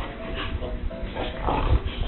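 An animal's call over background music, with a low rumble underneath.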